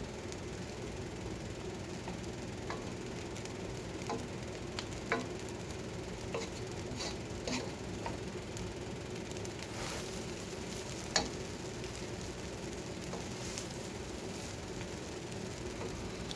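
Pancit noodles sizzling in a pot on the stove as they are stirred and tossed with a wooden spoon and a plastic spoon, with scattered light knocks and scrapes of the utensils against the pot.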